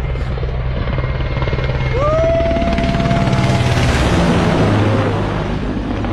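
Military helicopter passing low and close: its rapid rotor beat swells to loudest about four seconds in, and its pitch drops as it goes by. A long high whistle sounds about two seconds in.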